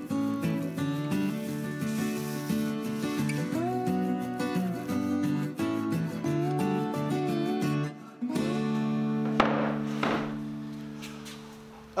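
Background music: a melody of changing notes over a bass line, settling about eight seconds in on a long held chord that fades away over the last few seconds.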